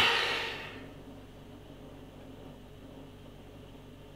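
A man's breathy exhale that fades out within the first second, then quiet room tone with a faint low hum.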